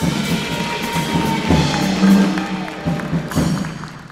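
Jazz big band playing a short loud passage between announcements, with drum kit strikes over the horns, dying away near the end.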